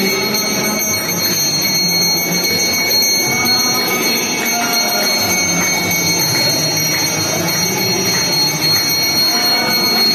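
Continuous metallic ringing of temple bells during an arati lamp offering, steady and loud, over a busy din of the crowd.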